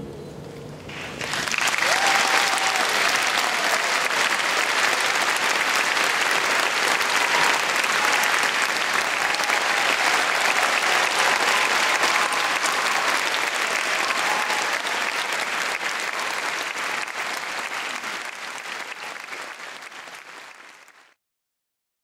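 Audience applauding in an auditorium, starting about a second in as the last chord dies away, then holding steady and fading out near the end.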